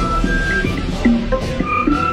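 Instrumental background music: a melody of held high notes over a low, buzzy note figure that recurs about once a second.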